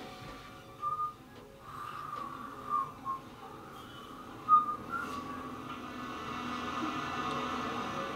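A few short high-pitched whistle-like chirps, the loudest about four and a half seconds in, then a held high tone, over quiet background music.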